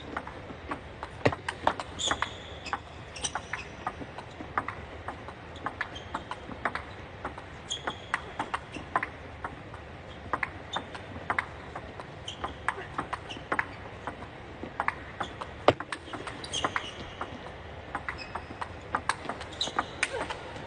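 Table tennis rally: the ball clicking off the paddles and the table in a quick, irregular back-and-forth, a couple of hits a second over a long exchange.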